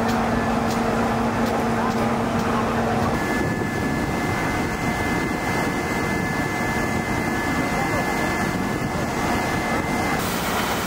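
A steady engine drone with a constant hum under a wash of outdoor noise. The hum changes pitch abruptly at a cut about three seconds in.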